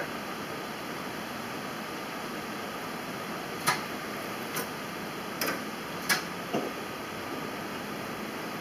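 Steady hum of an old forklift running some distance away, with a handful of short sharp clicks in the middle.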